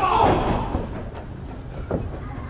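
Professional wrestlers trading slaps in the ring: a sharp smack at the start and another near the end, with crowd voices and a shout in between.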